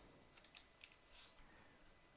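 Faint typing on a computer keyboard: a handful of quick keystrokes in the first second and a half.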